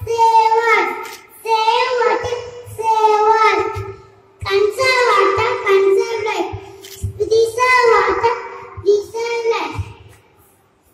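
A young girl singing solo into a microphone without accompaniment, in short phrases of about two to three seconds with brief breaks between them.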